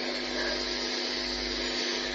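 Steady background hiss with a faint constant hum, unchanging throughout.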